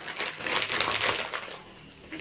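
Plastic courier mailer bag crinkling in a rapid run of crackles as it is handled and cut open with scissors, dying down about a second and a half in.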